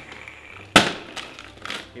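Paper covering on a cardboard advent-calendar box being punched through and torn open by hand: a sharp rip a little under a second in, then tearing and crinkling.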